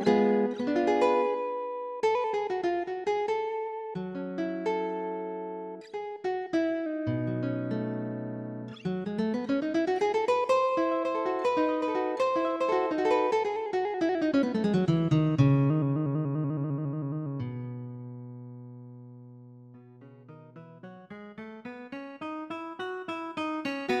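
Instrumental MIDI music played on a Roland SC-55 sound module's nylon- and steel-string guitar patches: plucked guitar notes, with a long run of notes climbing and then falling back in the middle. Near the end it dies down and builds up again.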